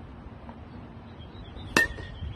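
A baseball bat striking a pitched ball once near the end: a sharp crack with a brief ring.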